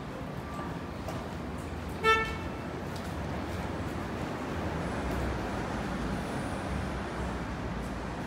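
A single short car horn beep about two seconds in, over a steady low rumble of street traffic.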